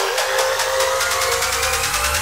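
Psytrance build-up: the kick and bassline are filtered out, leaving ticking hi-hats under a synth sweep that rises steadily in pitch. Near the end, low swooping bass sounds start to return.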